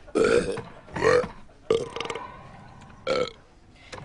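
People forcing deliberate belches, four short burps in quick succession, in a burping contest.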